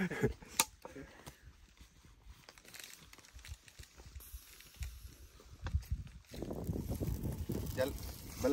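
Brief laughter, then a quiet stretch with a few small clicks. About six seconds in, a burning bundle of leafy branches starts to crackle and rustle, a dense run of small pops.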